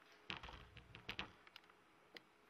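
Near silence with a handful of soft clicks and taps, bunched in the first second and a half, the loudest near the start.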